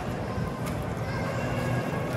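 Water swishing steadily along the side of a gondola as it glides through a shallow canal, with a child's hand trailing in the water, and a couple of faint clicks.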